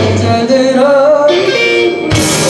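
Live pop-rock band with acoustic and electric guitars, drums and keyboard playing a melody; about half a second in the bass and cymbals drop back, leaving the melody over lighter accompaniment.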